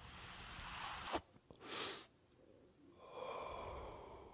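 Faint whoosh sound effects of a logo intro animation: rushing noise that swells over the first second and ends in a click, a short second swell just before the two-second mark, and a faint humming tone in the last second.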